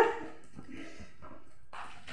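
A dog giving a short, rising bark as it jumps for a pillow in play, followed by faint rustling and scuffling.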